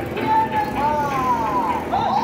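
Sirens wailing, several overlapping tones gliding up and down in pitch.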